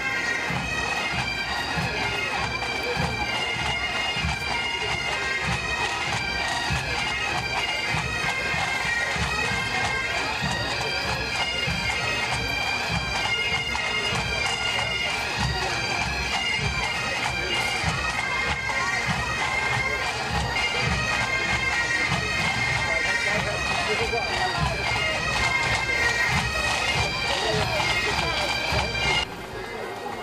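Massed pipe bands playing together: many Highland bagpipes sounding a melody over their steady drone, with pipe-band drums keeping a regular marching beat. The music cuts off abruptly about a second before the end.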